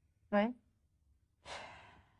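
A single short spoken "oui", then about a second and a half in an audible breath, a soft rush of air that fades over half a second.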